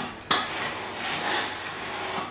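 Steam generator iron releasing steam in a steady hiss that starts suddenly a fraction of a second in and dies down near the end, as the iron slides over the fabric.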